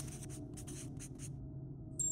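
Marker pen writing: a quick run of short scratchy strokes for about a second and a half, then they stop, leaving a faint low hum.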